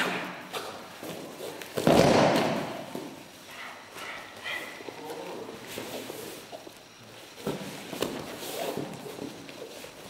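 A takedown in live MMA grappling: bodies hit the foam puzzle mats with a loud thud about two seconds in. Scuffling and smaller knocks of the fighters scrambling on the mats follow.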